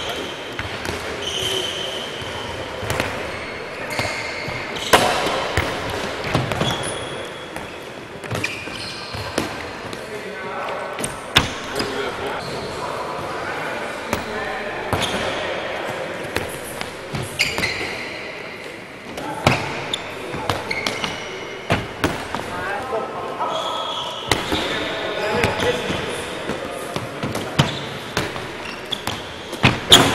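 Handballs bouncing on a wooden sports-hall floor at irregular intervals, with short squeaks of players' shoes on the boards as they cut and turn.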